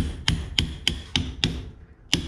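A run of sharp metallic clicks, about three to four a second, each with a short ring, pausing briefly near the end. They come from metal tools working at a bent steel tube that has wedged itself tight in a homemade bender die.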